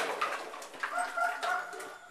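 Empty plastic bottles clattering and crinkling as a Labrador retriever noses through them hunting for a thrown ball. About a second in, a steady whine-like tone starts and holds to the end.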